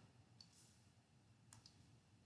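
Near silence with a few faint computer mouse clicks: one about half a second in and two close together about one and a half seconds in.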